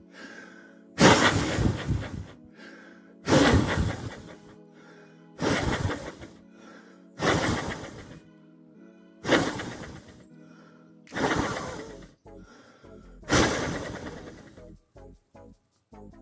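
A person blowing hard on a small wind turbine's blades to spin it. There are seven gusts of breath, about two seconds apart, each a loud rush of air hitting the microphone that fades within about a second. Faint background music plays underneath.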